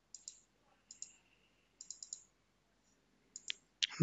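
Computer mouse button clicks: a few short pairs of clicks and a quick run of four, with one sharper click near the end.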